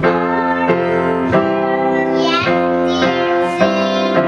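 Piano playing a steady run of notes, changing about every two thirds of a second. A child's voice joins in briefly about two seconds in.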